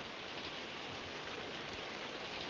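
Rain falling steadily, heard as a faint, even hiss.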